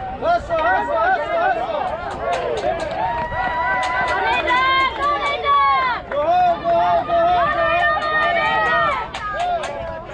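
Spectators and players yelling and cheering on a hit in a youth baseball game: several voices shouting over each other in long, drawn-out calls that rise and fall.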